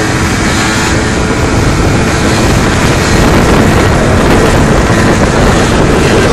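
Loud wind rushing over the microphone of a moving moped, with the scooter's engine running underneath; a little louder from about halfway through.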